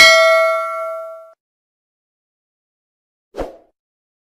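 A bright bell ding, the notification-bell sound effect of a subscribe animation, rings out and fades away over just over a second. A short, dull thump follows near the end.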